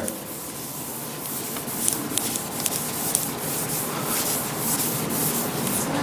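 Chalkboard eraser rubbing across a chalkboard in repeated strokes, wiping off chalk writing.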